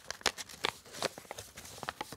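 Paper crackling and rustling as a folded handwritten note is handled and opened out: a string of light, irregular crackles.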